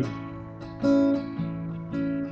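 Acoustic guitar strumming a slow country accompaniment between sung lines: two chord strokes about a second apart, each left to ring and fade.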